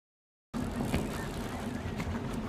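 Boat underway at sea: a steady outboard motor hum with wind and water noise, cutting in suddenly about half a second in after silence.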